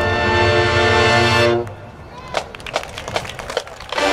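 Marching band's brass section holding a loud sustained chord over a bass rumble, cutting off sharply about a second and a half in. The rest is a quieter break filled with scattered sharp percussion hits.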